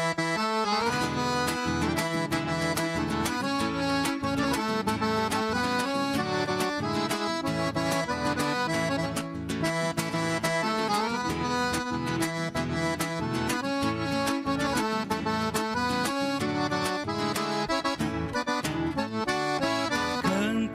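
Accordion playing the instrumental introduction of a gaúcho vaneira, sustained chords and melody over a steady rhythm.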